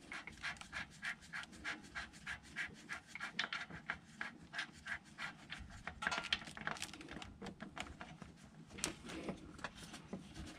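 Ratchet wrench working the 12 mm centre bolt of the oil filter cover: a faint, rhythmic run of light clicks, several a second, with a few louder ones later on.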